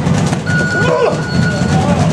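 A single steady electronic beep, held for about a second, over loud gym noise of quick thuds and voices.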